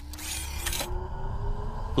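Sound effect of a robotic machine powering up and raising its head: a low hum under a slowly rising whine, with a couple of mechanical clicks and a hiss that cuts off just before a second in.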